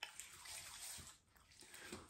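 Faint wet rubbing of hands massaging facial cleanser over the skin of the face.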